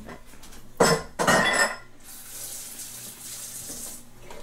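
Dishes knocking and clattering in a kitchen sink, then a kitchen tap running in a steady hiss for the last two seconds.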